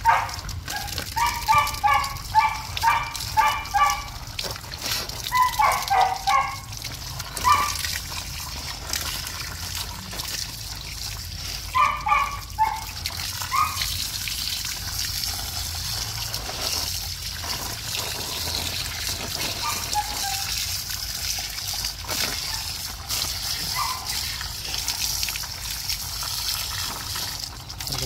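A small dog giving short, high-pitched yelps, two or three a second for the first few seconds and in a few more short runs up to about halfway, while it is being washed. From about halfway on, a steady hiss of water from a hose runs over it.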